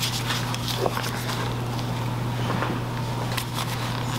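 Soft handling noises as gloved hands flex and press a silicone soap mold to push out a bar of cold-process soap: scattered small clicks and crackles over a steady low hum.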